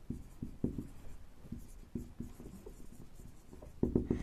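Marker pen writing on a whiteboard: a quick run of short strokes and taps, about three a second, with faint squeaks as a word is written out.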